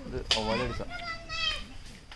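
High-pitched children's voices talking and calling out briefly, with a held call about a second in and a rising call shortly after.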